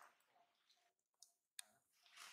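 Near silence with faint scattered clicks, and one sharp click about one and a half seconds in.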